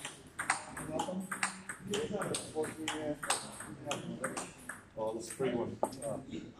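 Table tennis balls clicking off bats and tables in an echoing hall, irregular sharp ticks several times a second, with people talking indistinctly.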